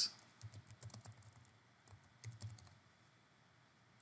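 Faint computer keyboard typing: a short run of key clicks, then a second brief run about two seconds in, as a terminal command is typed and entered.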